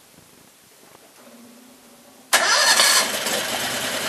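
Predator 670cc V-twin engine starting: a faint hum, then about two seconds in it fires straight off with no hesitation, runs loudly for a moment and settles into a steady idle. It runs on a GX670-type carburettor with a handmade air filter, and the owner calls it the best it's ever run.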